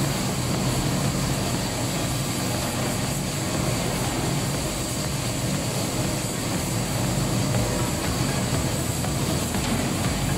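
Factory machinery running steadily: a continuous mechanical drone with a low hum underneath.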